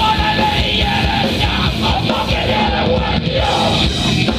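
Hardcore punk band playing live: distorted electric guitars, bass and drums, with yelled vocals, loud and unbroken.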